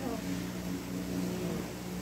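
A steady low hum of several held tones, with a few brief falling calls near the start.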